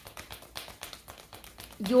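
A deck of tarot cards shuffled by hand, the cards making a quick, uneven run of light taps and slaps.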